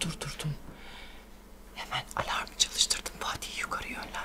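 Speech only: a spoken word ends right at the start, then after a short pause comes a couple of seconds of hushed, near-whispered talk.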